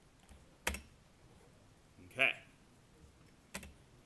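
Two sharp computer-keyboard key clicks, the first under a second in and the second near the end, which is a press of the space bar.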